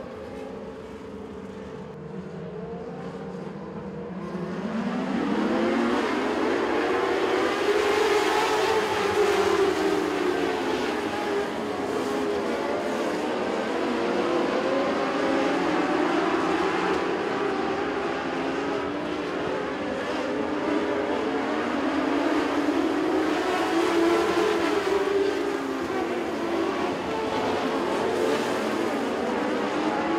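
Mod Lite dirt-track race car engines running at racing speed. They are quieter for the first few seconds, then louder from about five seconds in, with the engine pitch rising and falling in two long sweeps as the cars accelerate and lift.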